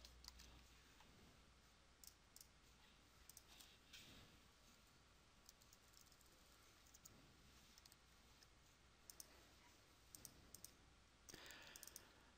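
Near silence with a few faint, scattered clicks of a computer mouse, more of them near the end.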